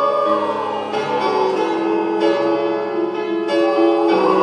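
Mixed choir singing held notes together, with keyboard chords struck every second or so underneath.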